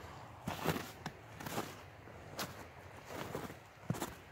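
Footsteps of a person walking over thin snow on leaf litter, uneven steps roughly every half second to a second.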